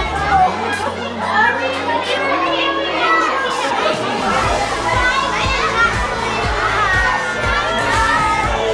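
A crowd of young children cheering and shouting in a school hallway, mixed with a pop song; the song's drum beat, about two strokes a second, comes in about halfway.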